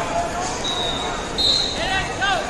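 Referee whistles blowing two steady high blasts, the second louder, over the chatter and shouts of a crowd in a large hall.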